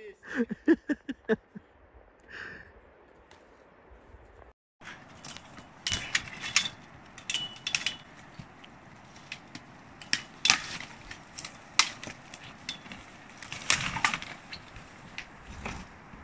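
Dry twigs and branches snapping and crackling irregularly among rustling brush as someone moves through dense pine undergrowth, with several sharper cracks.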